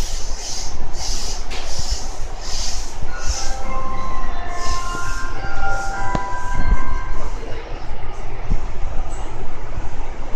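JR East E233 series 8000 electric train arriving and slowing to a stop, with a regular hissing clatter in the first few seconds. Several steady whining tones sound from about three seconds in and fade as it comes to a halt.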